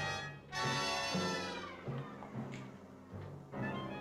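A cat meowing on an old film's soundtrack, over background music with low repeated notes. One long, drawn-out meow ends just after the start, and a second lasts over a second before trailing off.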